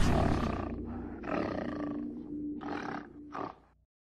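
Logo-sting sound design: a deep impact fades away, then an animal roar sound effect comes in three bursts over a low held music tone. The last burst is short and the sound cuts off suddenly.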